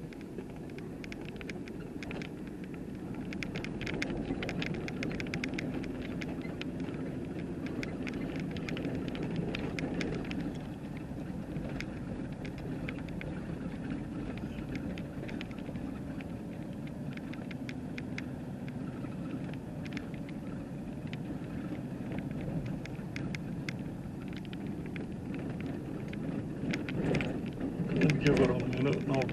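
A vehicle driving on a dirt road, heard from inside the cabin: a steady low road and engine rumble with many small ticks and rattles throughout.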